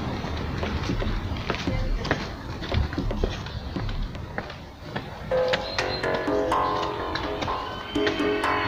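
Outdoor noise with scattered short knocks and scuffs, then background music with held notes comes in about five seconds in and becomes the main sound.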